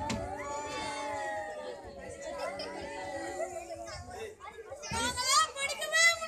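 Children's voices speaking and calling out, the voices getting louder and higher-pitched for the last second or so.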